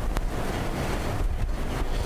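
Steady rushing background noise on an open microphone, with a low rumble and a single click just after the start.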